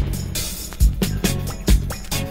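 Instrumental roots reggae dub: a deep, steady bass line under a heavy drum beat landing a little more than once a second, with lighter drum strokes between.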